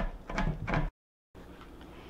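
Several quick chops of a chef's knife through chocolate onto a plastic cutting board, then the sound cuts out abruptly for about half a second and only a faint low hum remains.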